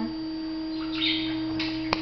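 Steady electrical hum on a computer or webcam microphone. A short hiss comes about a second in and a single click just before the end.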